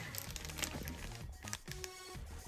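Clear plastic bag crinkling in a series of small irregular crackles as a small figurine is handled inside it, with background music underneath.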